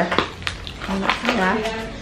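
Hands tearing open a parcel wrapped in brown packing tape: crinkling and a few sharp tearing snaps in the first half-second, with a little quiet speech after.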